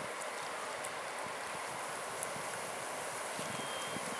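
Steady rush of moving river water flowing over rocks.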